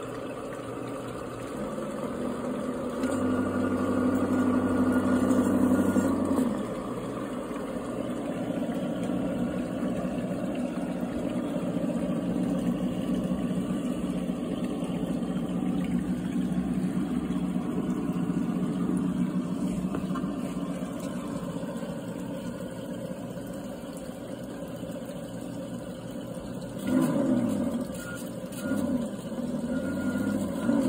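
Engine sound from an RC car's hobby-grade sound module, played through its on-board speaker. It runs steadily, louder for a few seconds early on, and rises and falls in pitch near the end.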